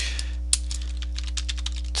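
Computer keyboard being typed on, a quick run of keystrokes with one louder key strike about half a second in, over a steady low electrical hum.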